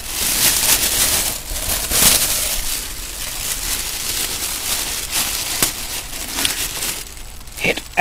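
Rustling and crinkling of LP record sleeves and their packaging being handled, with a few sharper clicks, busiest in the first couple of seconds.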